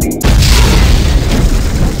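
A loud, deep boom sound effect for an intro logo reveal. It hits about a quarter second in, cuts off the beat before it, and dies away slowly.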